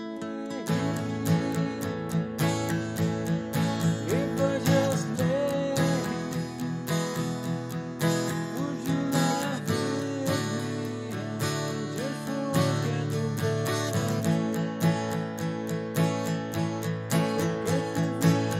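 Steel-string jumbo acoustic guitar playing a steady, evenly picked repeating riff, which starts about a second in after a ringing chord.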